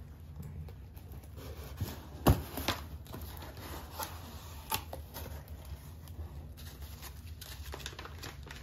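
Cardboard shipping box being opened by hand: the flaps and lid handled and pulled open, with cardboard rustling and a string of sharp knocks and clicks, the loudest about two seconds in.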